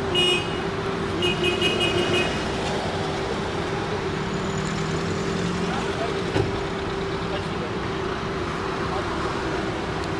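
Street traffic noise with a continuous steady hum, and two short high-pitched beeping bursts in the first couple of seconds.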